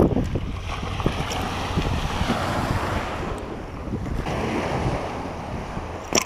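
Wind rumbling steadily on an action camera's microphone, over a wash of gentle surf on the beach, with a few light clicks.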